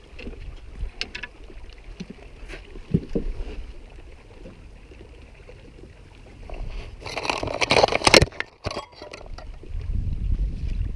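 Handling sounds in a small canoe: scattered light knocks in the first few seconds, then a loud rough rush of noise lasting about a second past the middle.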